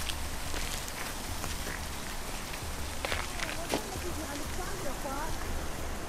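Outdoor ambience: a steady hiss with faint voices in the background and a few light clicks.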